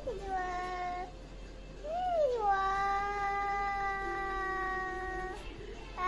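A young boy's voice making long, drawn-out sung vowel sounds: a short held note, then after a brief pause a note that swoops up and down and is then held steady for about three seconds.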